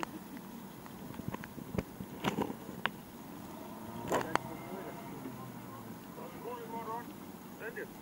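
Faint steady hum of the rescue boat's outboard motor running on the water below, with a few sharp knocks and clicks in the first half and voices calling near the end.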